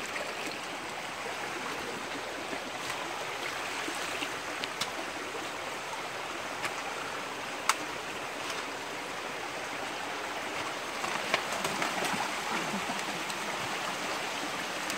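Shallow creek water running steadily over rocks and logs, with a few sharp clicks scattered through.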